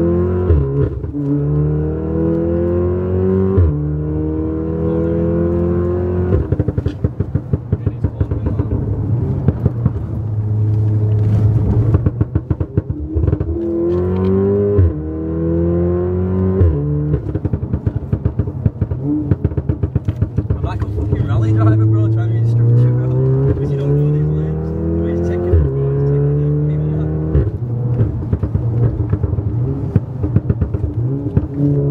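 Stage 1+ remapped Volkswagen Golf R's turbocharged four-cylinder engine, with a Milltek cat-back exhaust, heard from inside the cabin under hard acceleration. The revs climb in repeated rising sweeps, each cut short by a quick upshift. A stretch of rapid crackling runs through the middle.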